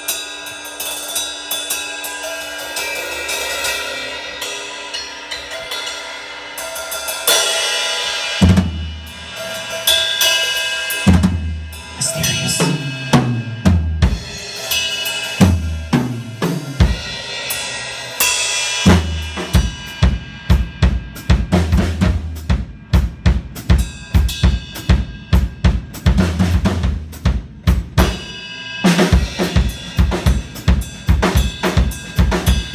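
Live drum kit solo: ringing cymbals at first, then tom fills that fall in pitch from high toms down to floor tom and bass drum, and from about two-thirds of the way in a fast, even beat of bass drum and cymbals at about three to four hits a second.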